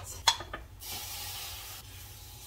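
Chicken stock poured into a hot pan of butter-flour roux and vegetables, hissing and sizzling. The hiss starts suddenly just under a second in, lasts about a second, then dies down.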